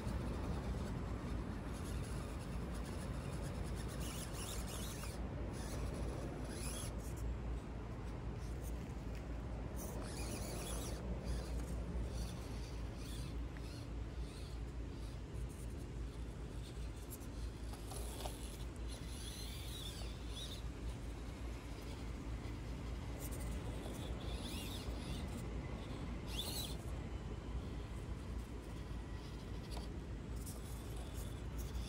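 Axial SCX24 micro RC crawler climbing a dirt and rock slope: its tyres scrape and crackle over dirt and stones in short scratchy bursts several times, over a steady low rumble. Its small motor whines faintly in the second half.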